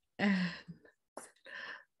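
A woman's brief voiced sound with a falling pitch, followed about a second later by a soft breathy exhale, like a sigh.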